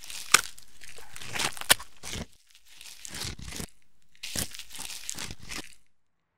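Dry crackling and crinkling in several bursts, with a few sharp snaps in the first two seconds. It cuts off suddenly just before the end.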